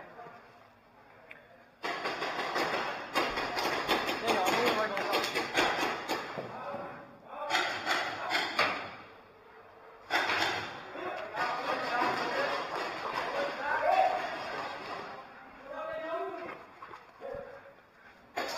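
Long streams of rapid paintball marker fire ringing in a large hall with a metal roof: three spells that start and stop suddenly, the first about two seconds in. Faint distant shouting comes near the end.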